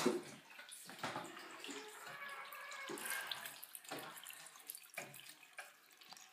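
Water running from a tap into a bathroom sink, with a few knocks and bumps.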